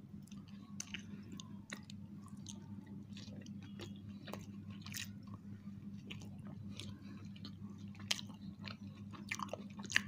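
Two people chewing and biting into soft pizza, with small irregular mouth clicks and smacks, over a faint steady low hum.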